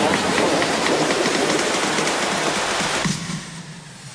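Road-paving machinery running: a dense, rapid mechanical clatter that drops away much quieter about three seconds in.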